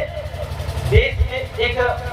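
A man speaking in Hindi into a handheld microphone, his voice carried over a public-address loudspeaker, with a steady low rumble underneath.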